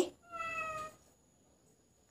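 A cat meowing once: a short, soft, even-pitched call of about half a second, near the start.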